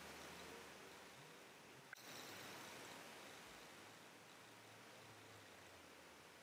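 Near silence: faint steady room hiss, with one faint click about two seconds in.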